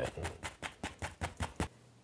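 A paint-loaded brush tapped quickly and repeatedly against a stretched canvas, about six light taps a second, stopping shortly before the end: dark green oil paint being stippled on as foreground grass.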